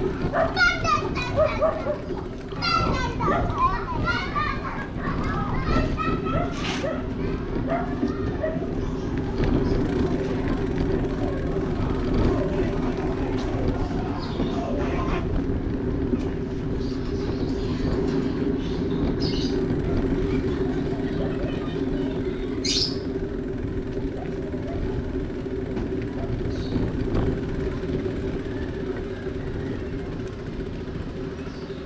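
Children shouting and calling out in the street during the first several seconds, over the steady low hum of a car driving slowly. A single brief, high chirp comes about three-quarters of the way through.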